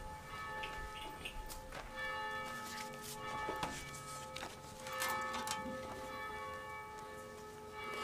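Bells ringing faintly: several sustained ringing tones that hang and fade, with new strikes every second or two.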